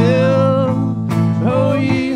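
Live worship band playing a song: a man singing the melody over strummed acoustic and electric guitars, with a drum kit behind.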